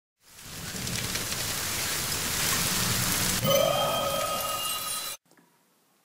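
Logo intro sound effect: a loud rushing, rain-like noise that swells in, joined about halfway by a few steady ringing tones and a rising note, then cutting off suddenly shortly before the narration.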